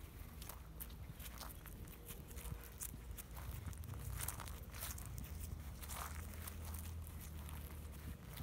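Footsteps on dry, dead grass: irregular soft crunches and crackles of steps through brittle turf, over a low steady rumble.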